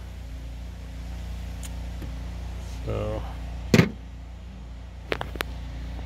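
A steady low hum, with a brief voiced hesitation about three seconds in. A single sharp click comes just before four seconds, and two lighter clicks follow a little after five seconds.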